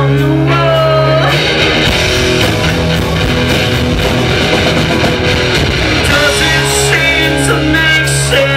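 Live punk rock band playing loud with electric guitars, bass and drums, recorded from among the pub crowd. The sung vocal drops out about a second and a half in for an instrumental stretch and comes back about six seconds in.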